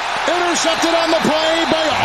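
A man's voice in long, drawn-out wordless cries, several held pitches one after another, over steady background noise.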